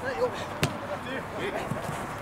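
A football struck once with a sharp kick about two thirds of a second in, over players' calls and shouts on the pitch.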